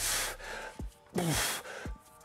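A man's forceful breaths through the mouth while he pulls repeated deadlift reps with a loaded barbell: one sharp breath at the start and another a little over a second in, with a couple of faint low knocks between them.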